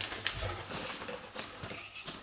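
Paper leaflets rustling faintly as they are handled and pulled out of a cardboard box.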